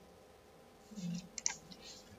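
A few quick computer mouse clicks about one and a half seconds in, as selected variables are moved across in software.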